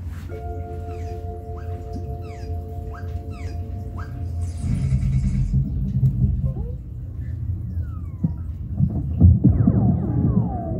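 Cartoon soundtrack playing over a bass-heavy sound system, with a steady deep bass rumble underneath. For the first four seconds a chord is held while quick sliding whistle-like effects sound over it. After that comes fuller music with a heavy low end, busiest near the end. There is a short laugh about a second in.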